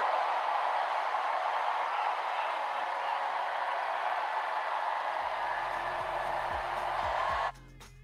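Crowd cheering and clapping. About five seconds in, music with a steady bass line comes in under it, and near the end the crowd noise cuts off suddenly, leaving the music much quieter.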